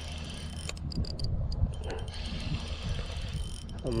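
Shimano Stradic 2500 spinning reel being wound in against a hooked fish: a steady mechanical winding with small clicks.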